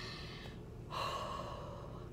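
A woman breathing out heavily through her open mouth in frustration: a short breath, then a longer sighing breath starting about a second in.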